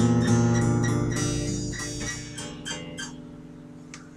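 Acoustic-electric guitar played unplugged: a strummed chord ringing, with a few more strums and picked notes over it, dying away over the last second.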